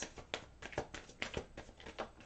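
Rider-Waite tarot cards being shuffled by hand: a quick, irregular run of soft clicks and slaps as the cards riffle against each other.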